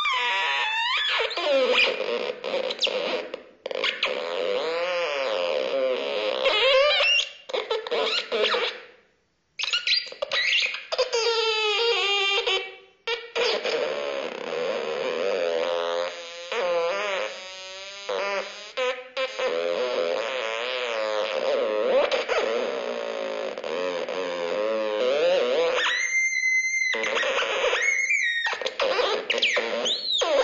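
STEIM Crackle Box (Kraakdoos), an analog electronic instrument played by touching its exposed circuit contacts, sounding through its own built-in speaker. The player's skin conductivity sets the sound: warbling electronic tones that glide up and down and jump in pitch, cutting out abruptly a few times as the fingers lift, with a steady held tone near the end.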